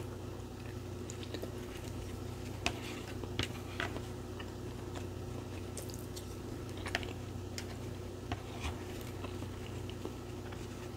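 A person chewing and eating soft food (eggs and avocado) close to the microphone, with scattered short clicks and smacks from the mouth and the fork on a paper plate, over a steady low hum.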